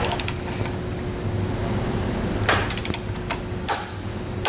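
Torque wrench ratcheting and clicking on the hitch's hex mounting bolts as they are torqued to spec: a quick run of clicks at the start, another about two and a half seconds in, then single clicks.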